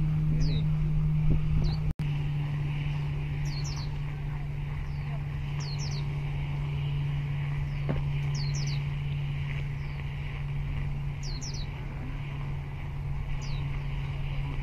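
Birds giving short, falling high chirps, singly or in quick pairs, about every two seconds, over a steady low drone and a faint hiss. The audio drops out for an instant about two seconds in.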